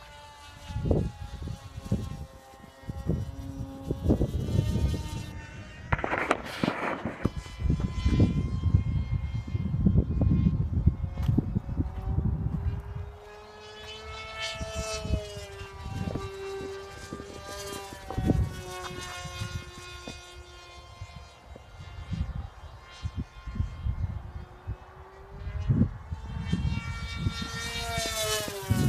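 Carbon-Z Scimitar RC flying wing's electric motor and propeller whining overhead, its pitch rising and falling as it makes passes and changes throttle. Low rumbling gusts of wind buffet the microphone again and again.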